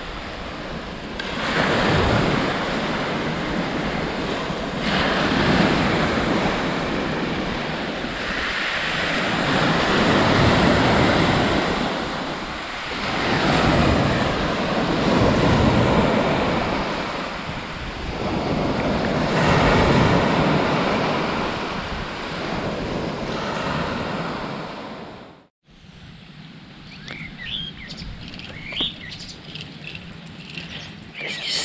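Small waves breaking and washing up a beach of fine pebbles, the surf swelling and fading about every four seconds. Near the end it cuts off abruptly, giving way to quieter open air with a few bird chirps.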